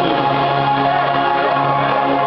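Live dance-pop band playing loud over a club PA: held synth chords with singing.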